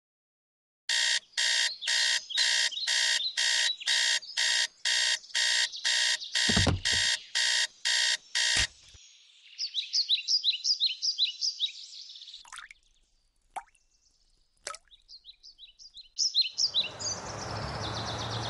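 Digital bedside alarm clock beeping in even pulses, about two a second, with a thump as a hand comes down on it and a click as the beeping stops. Then high chirping like birdsong with a few sharp clicks, and near the end a steady outdoor background of street noise comes up.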